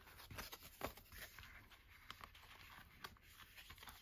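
Faint paper rustling and soft scrapes, a scatter of light ticks, as glossy cards are slid back into a paper envelope.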